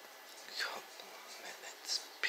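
A voice speaking softly in a near-whisper, with no clear pitch; no other sound stands out.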